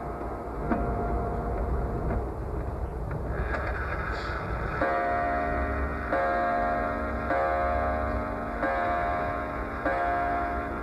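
Antique wall clock striking, its hammer hitting the gong about once every second and a quarter from about five seconds in, each note ringing on until the next, after a few softer rings in the first seconds. Clock ticking sits underneath.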